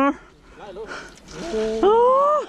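A person's loud, drawn-out shout that rises in pitch and holds, starting about three-quarters of the way in, after a quieter stretch of faint outdoor background.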